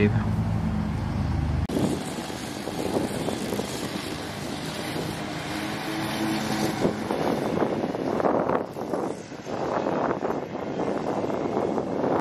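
Outdoor background noise. A low engine-like hum stops abruptly about two seconds in, then a steady rushing noise with a few brief crackles follows.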